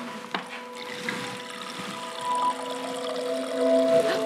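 Water running from a refrigerator door dispenser into a glass, with a sharp click shortly after the start.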